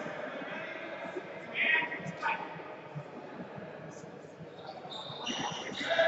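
Hall ambience of a longsword fencing bout: indistinct voices echo in a large sports hall, with a few short clashes and rings of the swords about two seconds in and again near the end.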